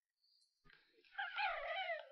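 Near silence, then about a second in a high, wavering whine that glides up and down in pitch, like an animal whimpering.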